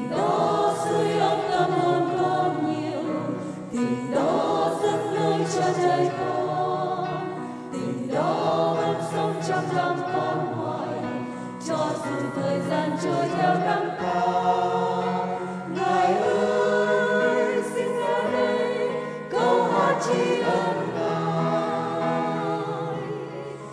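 Choir singing a hymn over a sustained low accompaniment, in phrases that start about every four seconds.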